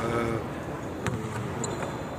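A basketball bouncing once on the hardwood court in a large hall, a sharp knock about a second in.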